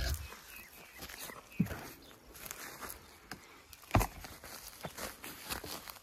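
Weathered wooden hinged lid of a filter pit being lifted open by hand: scattered light knocks and scrapes of wood, with a heavier thump about four seconds in.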